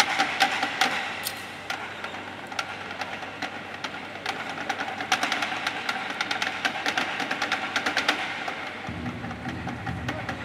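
Percussion ensemble striking metal pots, pans and bowls with kitchen knives: a fast, dense run of sharp metallic taps and clicks in rhythm, over a steady ringing from the struck metal. A low hum comes in near the end.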